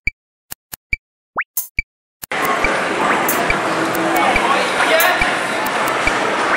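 A few sharp pops and one quick rising chirp over silence. Then, a little over two seconds in, the steady din of an arcade hall starts: electronic blips and clicks from game machines mixed with voices.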